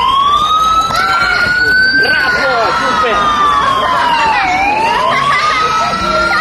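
Emergency vehicle siren on a slow wail, its pitch rising for about two seconds, sliding down to a low point about four and a half seconds in, then climbing again.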